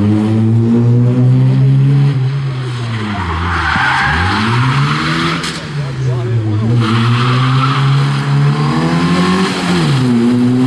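Opel Corsa rally car engine revving hard. Its pitch drops steeply about four seconds in as the driver lifts off for a turn, then climbs again under acceleration, and dips once more near the end. Tyres squeal on the tarmac through the turns.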